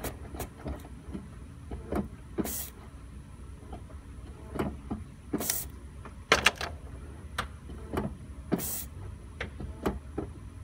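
Workshop sounds: scattered sharp clicks and knocks over a steady low hum, with a short hiss about every three seconds.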